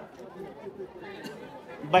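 Background chatter of a group of people talking, faint and indistinct, in a pause between loud spoken phrases.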